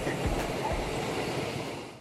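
Wind rushing and buffeting on the microphone outdoors, with a few low thumps near the start, fading out toward the end.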